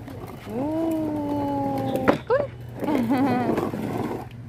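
A young child's voice vocalizing without words: a long held 'aah' that sags slightly in pitch, a short rising squeal, then a wobbling, trilled sound.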